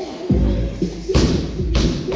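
Barbell loaded with rubber bumper plates dropped from overhead, hitting the gym floor with a heavy thud about a second in and a second thud shortly after, over background music.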